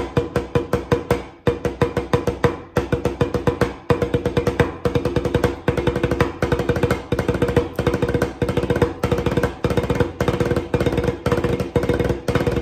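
Wooden drumsticks playing even single strokes on a snare drum (tarola) in runs of seven, the seven-stroke roll rudiment, with one seven-stroke group led by the right hand joined to one led by the left. The phrases repeat with short breaks between them, and each stroke carries a short ringing tone from the drum head.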